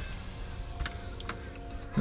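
A few faint, short clicks of plastic wiring-harness connectors and wires being handled, over a low steady background hum.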